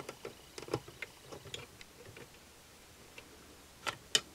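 Faint, irregular clicks and taps of a metal hook against the plastic pegs of a KB Rotating Double Knit Loom as yarn loops are lifted from peg to peg. The clicks are closely spaced at first, thin out midway, and a louder click comes near the end.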